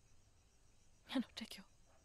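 A few short, breathy words spoken in a whisper, about a second in, against a faint background hush.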